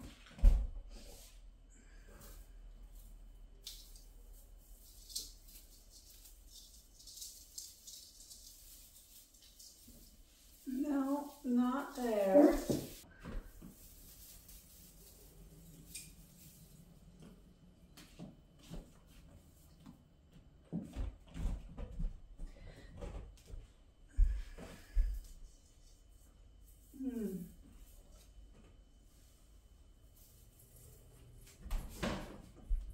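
Ornaments being handled and hung on a silver artificial Christmas tree: light rustling of the branches and a few dull thumps, the loudest just after the start and around twenty-four seconds. A brief wordless vocal sound rises and falls about eleven seconds in, and a shorter one comes near the end.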